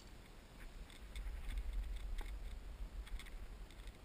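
Low wind rumble on the microphone that swells about a second in, with scattered faint clicks and ticks.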